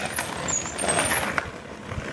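Skateboard wheels rolling on rough asphalt with a steady rumble, and a couple of sharp clicks from the board.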